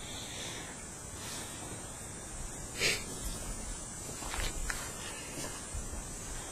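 Quiet room hiss with soft movement sounds as a man gets up from his chair and walks off: a short rush of noise about three seconds in, then a few light knocks and shuffles.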